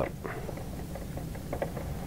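Phillips screwdriver turning a screw into a plastic iPad mount platform: faint, irregular small clicks and scrapes over a steady low hum.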